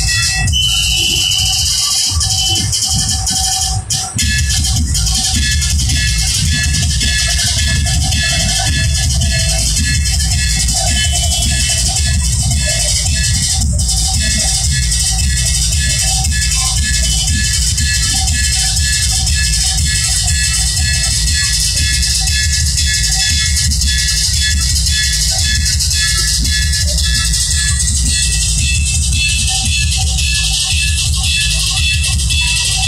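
Dhol drums played loudly and without a break, with crowd voices underneath.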